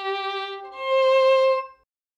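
Antique German violin bowed across two neighbouring strings in a string crossing: a sustained lower note, then a louder, higher note that stops a little before the end.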